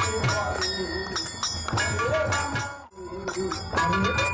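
Devotional namkirtan music: voices chanting over khol barrel drums and clashing brass hand cymbals. The sound drops out for a moment near the end, then resumes.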